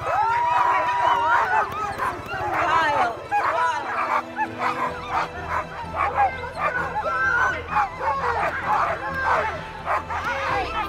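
A team of harnessed sled dogs yelping, barking and howling all at once, the excited clamour of dogs eager to run at a race start. One long whine is held near the beginning.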